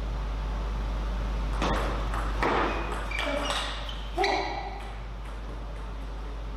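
Table tennis ball clicking sharply off bats and table in a short rally: a quick run of hits starting about a second and a half in, the loudest about four seconds in, then the rally ends.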